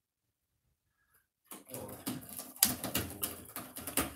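A livestream audio dropout: dead silence for about a second and a half, then the sound cuts back in abruptly as an indistinct, garbled jumble of clicks and noise.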